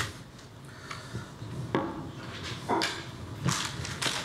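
Quiet handling of a metal hand plane: a cloth wiping protective oil off its iron body, with a few light knocks as the plane is handled and set down on a wooden bench.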